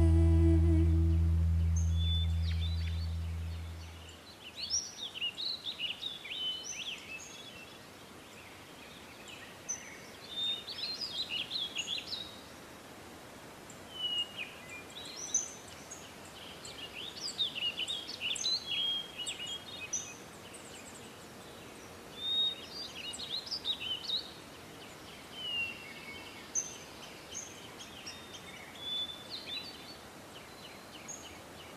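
The song's last held chord fades out over the first four seconds, then birds sing: short phrases of high chirps and trills repeated every few seconds over faint outdoor background noise.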